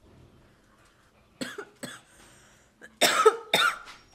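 A woman coughing from a lungful of cannabis blunt smoke: two short coughs about a second and a half in, then two louder, harder coughs near the end.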